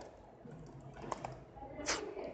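Computer keyboard keys tapped in a quick, uneven run as a filename is typed, with one louder keystroke shortly before the end.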